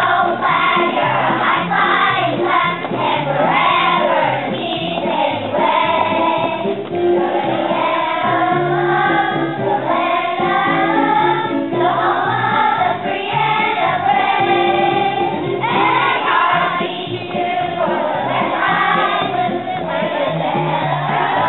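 A children's school choir singing a patriotic song together.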